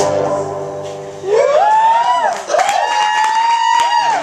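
The final electric guitar chord of a live song dies away, then a voice gives two long high "woo" calls, each gliding up and then held. A few claps come in near the end.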